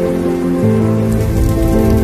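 Background music of sustained chords that shift to a new chord about half a second in, with a rain-like crackling hiss and a low rumble underneath from that point.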